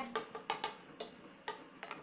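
A few sharp, irregular clicks from a frying pan of minced garlic being stirred with a spatula in hot oil, over a faint sizzle.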